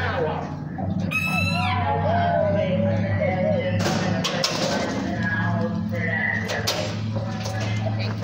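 Indistinct voices and music over a steady low hum, with a brief falling whistle-like sweep about a second in.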